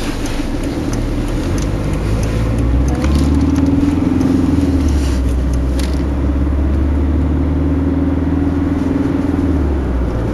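A car driving, heard from inside the cabin: a steady low engine hum with road noise that grows louder about three seconds in and then holds steady.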